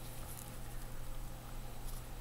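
A low steady hum with a few faint soft clicks from disposable-gloved hands handling a pepper pod.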